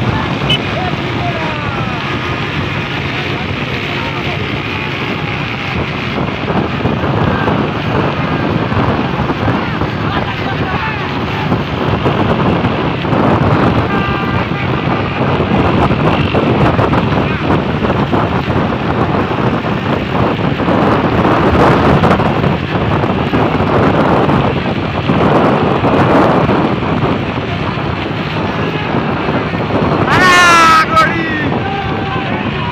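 Wind buffeting the microphone and road noise from riding alongside racing horse-drawn tangas, with men shouting throughout.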